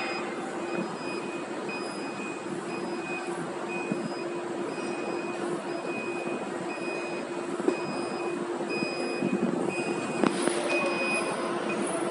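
Steady machine hum with a faint electronic beep repeating roughly once a second, from film-feeding machinery, and a few sharp clicks in the second half.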